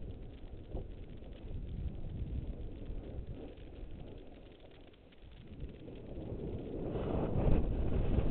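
Snowboard sliding and scraping over packed snow, with wind rushing on the microphone. The noise eases off about five seconds in, then grows louder over the last two seconds as the board picks up speed.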